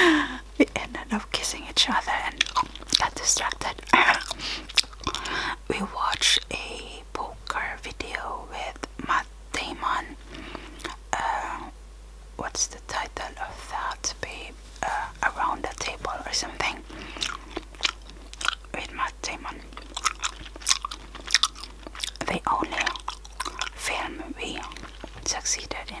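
Close-miked gum chewing: wet mouth smacks and clicks, many a second, with a brief lull about halfway.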